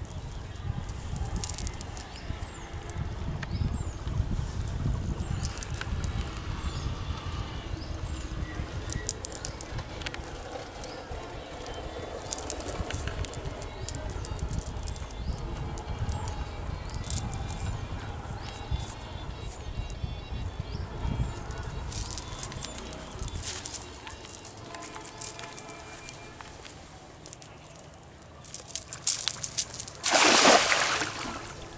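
Outdoor ambience: wind rumbling on the microphone, with birds chirping and light rustling as a cast net is gathered. Near the end water starts splashing as the net is pulled through the pond.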